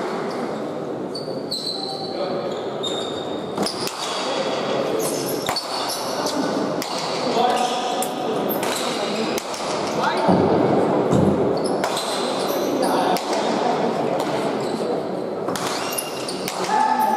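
Hard pelota ball repeatedly striking the walls and floor of an indoor court during a rally, each hit a sharp knock ringing in the hall, over continuous spectator chatter.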